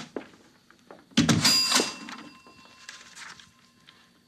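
Radio-drama sound effect of a door opening as two men go into a bar: a short click at the start, then a sudden loud clatter about a second in with a ringing that fades over the next second or two.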